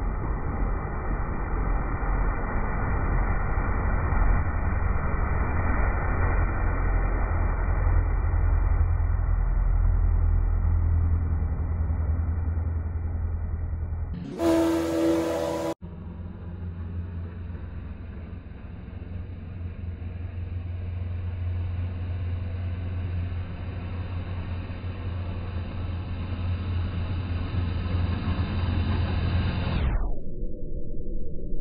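Outboard jet motor on an aluminum jet sled running steadily through shallow river water, a low drone with a wash of water noise. About halfway through it is interrupted at a cut by a brief different sound with a few steady tones. The engine and water then come back and grow louder as the boat closes in and passes near.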